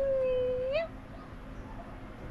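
An animal howling: one long, steady-pitched howl through the first second, turning up in pitch at its end.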